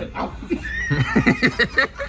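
A young man laughing hard in a quick run of short bursts, starting about a second in.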